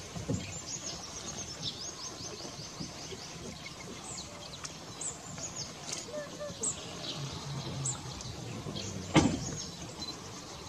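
Outdoor ambience with small birds chirping: many short, high, falling calls. A single sudden loud knock comes about nine seconds in.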